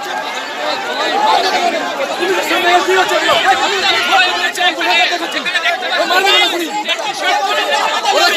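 A crowd of men shouting and talking over one another in a heated confrontation, many loud voices overlapping without a break.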